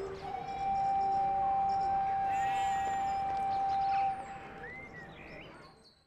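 Background music ending on a single long held note, which cuts off about four seconds in; a few short chirps follow as the sound fades out.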